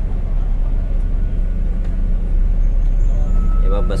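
Double-decker bus running along a city road, heard from inside on the upper deck: a steady low engine and road drone.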